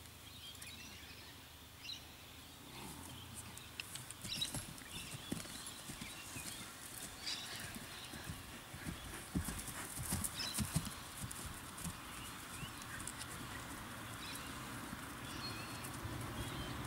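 Horse's hoofbeats on grass as it circles on a long lead rope: irregular dull thuds that start a few seconds in and are heaviest around the middle, then ease off.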